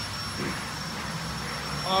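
Steady machinery hum and hiss with a faint, constant high-pitched whine, no distinct events.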